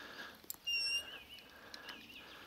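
A short, high whistled note about two-thirds of a second in, followed by a fainter wavering twitter at the same pitch: a bird call, over a low background hiss.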